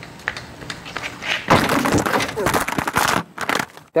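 A child's small bicycle wiping out on a concrete driveway: a loud scraping clatter of about a second and a half, starting about a second and a half in, with a voice mixed in, then a few light knocks.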